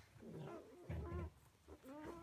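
Newborn Labrador Retriever puppies nursing, giving a few soft, short squeaks and whimpers that bend up and down in pitch, with faint low bumps as they jostle at the teats.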